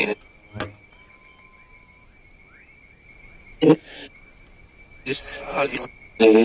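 Crickets trilling steadily in two high, unbroken tones. Over them comes a short click under a second in, and brief voice-like bursts about four seconds in and in the last second, fragments from a handheld spirit box sweeping radio stations.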